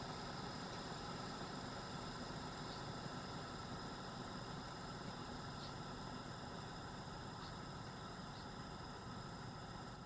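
Well pump system running steadily just after cutting in: a faint, even hum of water being pushed into the pressure tank, with a few thin high whine tones and a couple of faint ticks. The pressure is climbing from the cut-in toward the 50 PSI cut-out of the 30/50 pressure switch.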